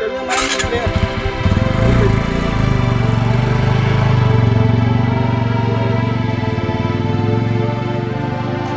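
A motorcycle engine running as the bike pulls away, mixed with background music.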